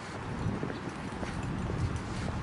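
Footsteps of a person walking on a concrete sidewalk, about two steps a second, over a low steady rumble.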